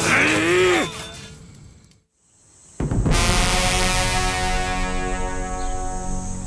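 A man's drawn-out, wavering cry in the first second, fading away into near silence. About three seconds in, sustained dramatic orchestral music starts abruptly with held chords and runs on.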